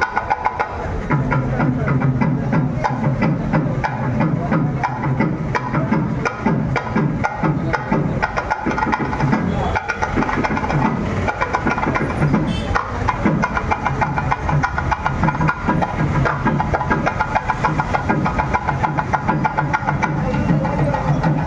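Traditional temple festival music with fast, continuous drumming, over the talk of a crowd.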